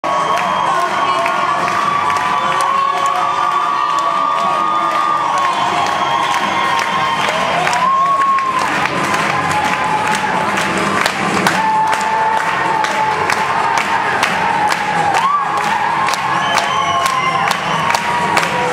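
Arena crowd cheering and shouting loudly throughout, with long held calls.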